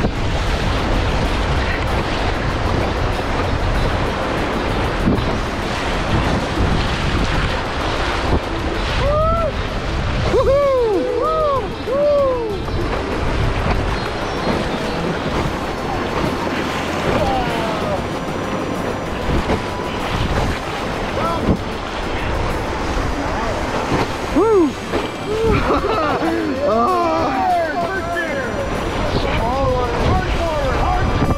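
Whitewater rapids rushing and splashing against an inflatable raft, with wind on the microphone. People in the raft whoop and yell in short rising-and-falling calls, about nine seconds in and again near the end.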